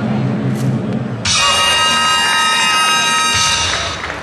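A loud held chord-like tone, many steady pitches sounding together, starts sharply about a second in and cuts off about two seconds later, over the arena's background noise and music.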